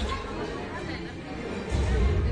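People chattering in a large room over the soundtrack of a panoramic sea-battle film. The film's deep rumble drops away and then swells back in loudly near the end.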